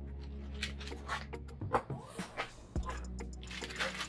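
Background music with steady sustained tones, under intermittent rustling and squeaking of foam packing and cardboard being handled as a laptop is lifted out of its box.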